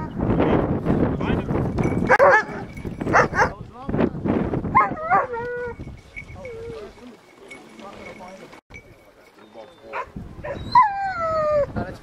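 A search-and-rescue dog barking repeatedly and loudly in the first few seconds, then quieter, with a loud bark near the end: its alert bark, the signal that it has found the hidden person.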